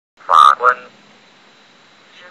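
The Microsoft Mary text-to-speech voice says one short word, most likely 'justices', in two quick syllable bursts. A faint steady hiss follows.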